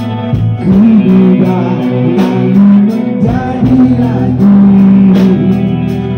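Live rock band playing through a PA: a sung vocal over electric guitar, bass and drums, with a steady drumbeat.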